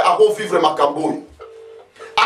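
Talking, then near the end a short, steady low telephone tone of about half a second heard over a phone line.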